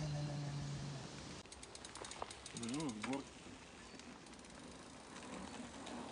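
Bicycle freewheel ratchet clicking rapidly as the bike coasts, starting about a second and a half in and fading out after about two seconds. A short steady voice-like hum comes first, and a brief wavering voice sounds among the clicks.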